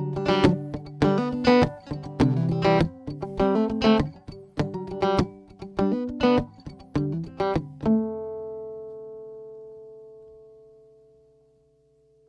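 Solo acoustic guitar playing the closing bars of a song as picked and strummed notes. A last chord is struck about eight seconds in and left to ring out, fading away.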